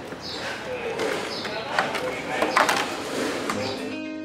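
Clear plastic plant saucers clacking as they are pulled from a stack, a few sharp clicks, over faint voices. Acoustic guitar music starts near the end.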